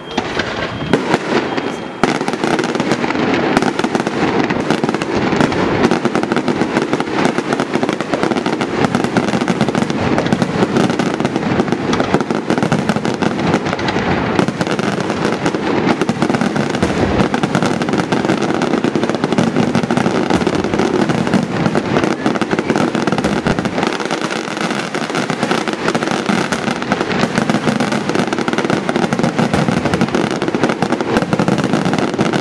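Daytime aerial fireworks going off overhead: shells bursting into white smoke and white crackling stars. The bangs thicken about two seconds in into a dense, unbroken barrage of rapid pops and crackling.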